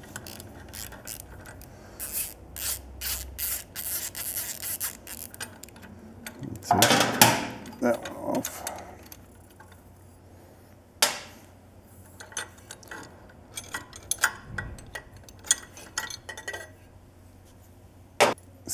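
Hand socket ratchet clicking in short runs as a 12 mm nut is backed off the exhaust header flange stud, then scattered metal clicks and rubbing as the header flange is worked loose by hand, with one sharper knock past the middle.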